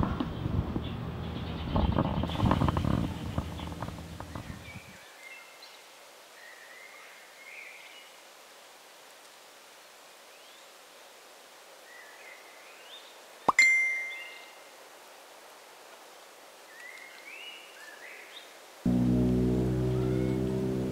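A phone's notification chime: one sharp ping that rings briefly and dies away about two-thirds of the way through. Faint bird chirps sound in the quiet background, a low sound fades out over the first few seconds, and music starts near the end.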